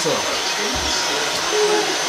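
Hair dryer running steadily, a continuous even blowing hiss, with faint voices in the room.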